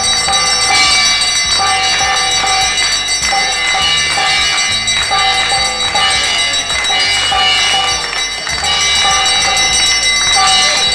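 A group of people clapping their hands in rhythm together with a rope-laced double-headed barrel drum, over a steady ringing of bells.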